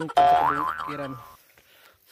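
A comedic 'boing'-like sound effect: a pitched tone that jumps upward and wobbles, lasting about a second and cut off sharply.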